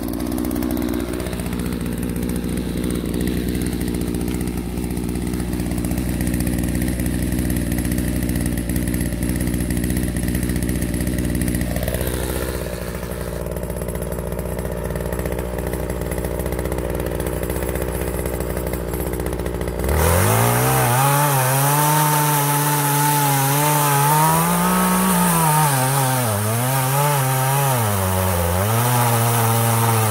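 Partner 351 two-stroke chainsaw idling steadily, then about two-thirds of the way through it goes abruptly to full throttle and cuts into a log. In the cut the engine pitch dips and recovers repeatedly as the chain loads up in the wood.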